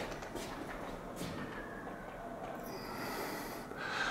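Quiet room tone with a faint breath of air near the microphone, a soft hiss a little before the end.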